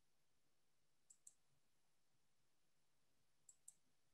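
Near silence broken by two faint double clicks, one about a second in and one near the end.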